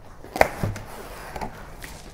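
A cardboard mailer box being handled and opened on a wooden table: one sharp knock about half a second in, then faint cardboard handling sounds as the lid is lifted.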